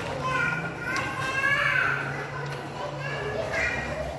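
A young child's voice, talking or making play noises in several short, high-pitched phrases.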